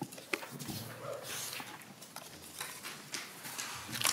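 Scattered light knocks, clicks and rustles of people moving and handling things at a table, with no talk.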